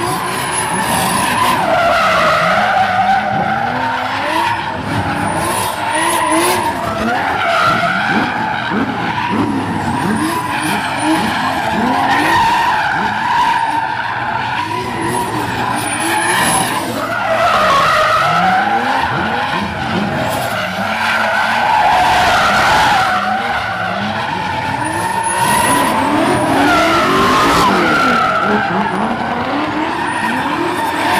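Two BMW E30 drift cars sliding in tandem: the engines rev up and down constantly over loud, continuous tyre squeal, with the pitch of both rising and falling as the cars swing through the slides.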